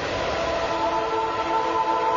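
A rushing whoosh sound effect, then about half a second in a sustained chord of several steady tones sets in and holds.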